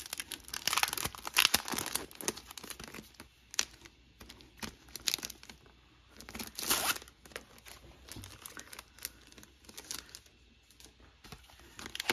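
Clear plastic packaging crinkling and rustling as a set of craft dies in their translucent sleeve is pulled out and handled. It comes in irregular crackly bursts, busiest in the first half and sparser near the end.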